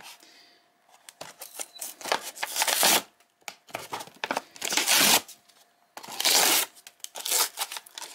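A cardboard-and-plastic blister pack holding a die-cast toy car being torn open by hand: several spells of ripping and crackling, the longest from about one and a half to three seconds in and from about four to five seconds in, with shorter rips near the end.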